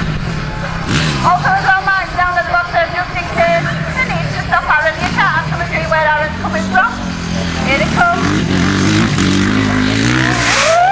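A motor vehicle engine running steadily at low revs, with indistinct voices over it.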